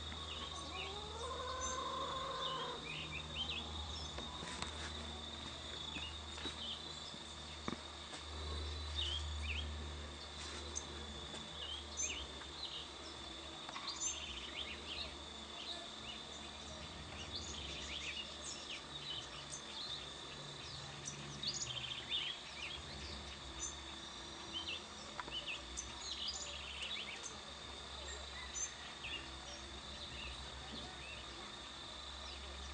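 Outdoor rural ambience: a steady high-pitched insect drone with many short bird chirps scattered throughout, over a low rumble. About a second in, a pitched animal call rises and then holds for about a second and a half.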